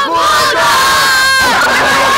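A group of children and an adult shouting together in one loud, held cheer that lasts about a second and a half, then breaks into a jumble of excited voices.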